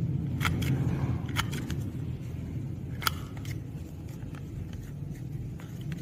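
A small plastic single-hole paper punch clicking as it is pressed through origami paper: several sharp clicks at uneven intervals, with a steady low hum behind.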